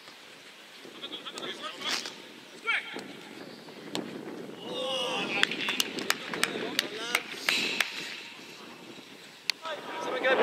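Footballers shouting short calls to each other across an outdoor pitch. In the middle seconds there is a quick run of sharp knocks, about three a second, and one more near the end.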